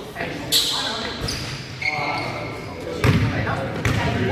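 A basketball being dribbled on a wooden gym floor: several irregular bounces that echo around the large hall, with players' voices calling out.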